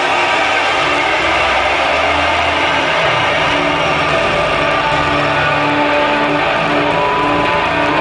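Loud live band music with no vocals: a dense, steady wash of drums and instruments, with a short repeating low riff coming forward about halfway through.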